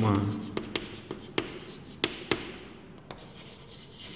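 Chalk writing on a blackboard: faint scratching strokes broken by several sharp, irregular taps as the chalk strikes the board, thinning out toward the end.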